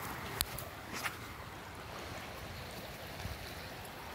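Steady low rumble of outdoor background noise on a phone microphone, with two brief clicks about half a second and a second in.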